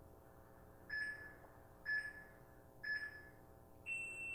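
Workout interval timer counting down: three short beeps about a second apart, then a higher, longer tone marking the end of the work interval.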